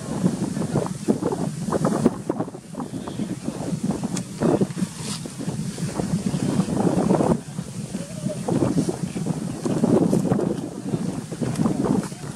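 Wind buffeting the microphone: an irregular, gusty rumble that swells and drops throughout.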